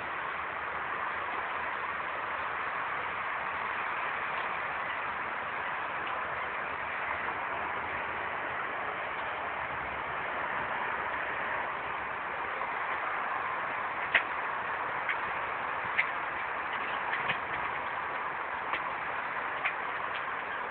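Steady hiss of outdoor background noise, with a few light clicks in the last several seconds.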